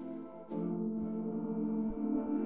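Soft ambient background music of long sustained tones, with a new chord coming in about half a second in.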